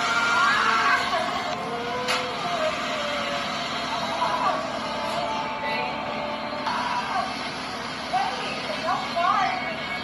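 Several people's voices with short rising and falling exclamations over a steady background hiss, with one sharp click about two seconds in.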